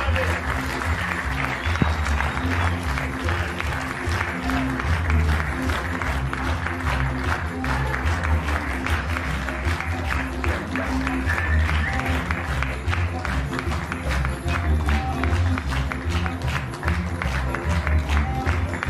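Theatre audience applauding steadily, with music and its low bass notes playing underneath.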